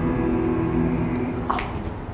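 A choir holding a sustained chord, several voice parts steady together, cut off with a brief hissing consonant about one and a half seconds in.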